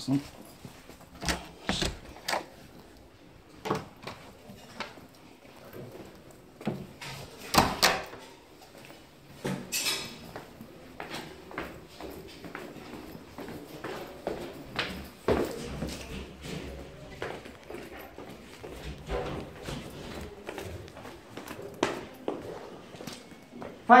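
Footsteps and scattered knocks of a person walking down concrete stairs, irregular sharp impacts a second or more apart.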